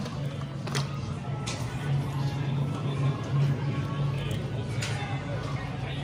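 Drugstore interior sound: background music playing over a steady low hum, with a few soft clicks.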